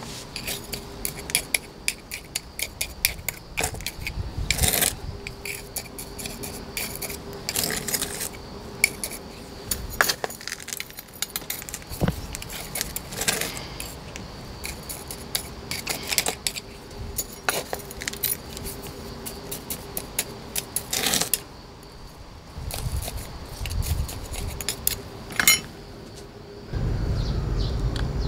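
A metal tool clicking and scraping in gritty potting mix in a small pot, in many irregular small clicks with a few louder knocks, as soil is settled around a newly planted succulent.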